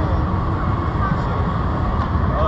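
Busy city street ambience: a steady low rumble with a crowd's voices mixed in.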